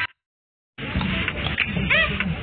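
Background music cuts off abruptly, then there is under a second of dead silence. Live football-pitch sound follows: steady open-air noise with scattered knocks and a brief high call near the end.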